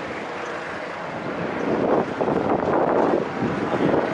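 Street traffic noise with wind buffeting the microphone, growing louder about halfway through.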